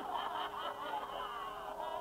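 A person snickering and chuckling, with overlapping voices.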